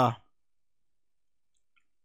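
The tail of a man's drawn-out spoken "uh" fading out in the first moment, then near silence.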